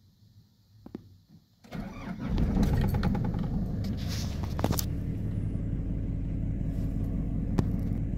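Nissan NV350 Urvan's engine being started with the key. A faint click comes about a second in, then brief cranking, and the engine catches and settles into a steady idle.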